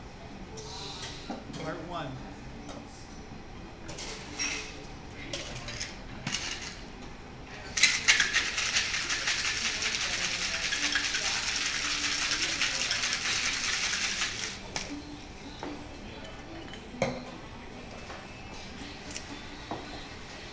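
Metal cocktail shaker shaken hard with ice for about seven seconds: a loud, fast, continuous rattle of ice against the tin. A few clinks and knocks come before it, and another knock follows.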